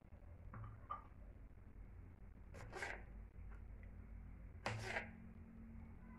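Quiet kitchen handling noise: two brief rustling scrapes about two seconds apart as cherry tomato halves are picked up and laid on a pasta salad, over a low steady hum.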